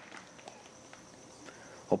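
Quiet outdoor ambience with a few faint soft ticks. A voice begins right at the end.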